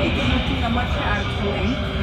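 Amsterdam metro train running, heard from inside the carriage: a steady low rumble and rushing as it comes out of the tunnel into a station. Passengers' conversation goes on over it.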